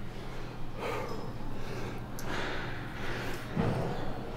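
A man breathing hard in a few soft, audible breaths, winded after a high-rep set of dumbbell curls that left his arms burning.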